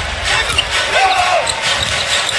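A basketball being dribbled on a hardwood court, a series of short bounces over the steady noise of an arena crowd.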